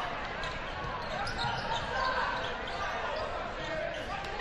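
Basketball game ambience in a gym: a ball bouncing on the hardwood court, with voices from players and spectators.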